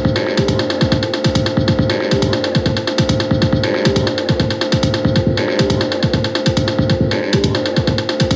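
Korg Volca Sample playing a looped electronic pattern: short bass hits falling in pitch, several a second, under a held tone and regular hi-hat-like ticks. The pattern shifts as its knobs are turned live.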